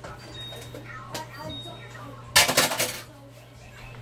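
A short, loud rattle of kitchen items being handled, lasting about half a second, a little past the middle, over a steady low hum.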